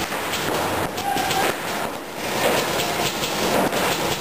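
Rapid paintball marker fire from several guns during a speedball game, a dense irregular run of sharp pops with paintballs smacking the inflatable bunkers.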